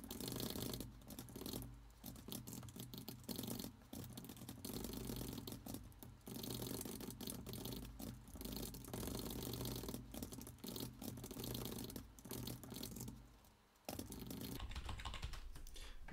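Typing on a computer keyboard: a fast, continuous run of keystrokes, with a brief pause near the end.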